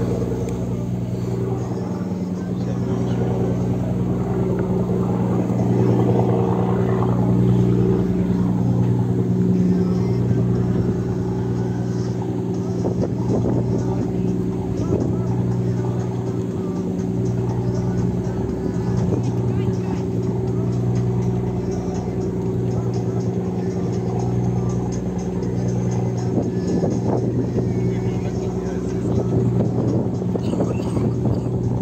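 A tour boat's engine runs with a steady low hum while the boat cruises, with rushing wind and wake noise over it.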